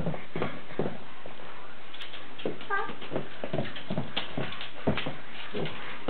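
Dog's claws clicking and tapping irregularly on a hard kitchen floor, with one short whine about three seconds in.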